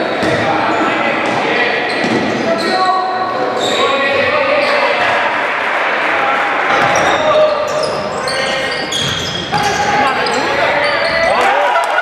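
Live basketball game sound in a sports hall: the ball bouncing on the court amid indistinct players' and benches' voices, echoing in the hall.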